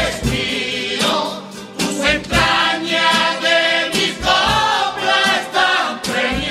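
Cádiz carnival group singing in chorus, accompanied by guitar and a bass drum beating under the voices, with a brief lull about a second and a half in.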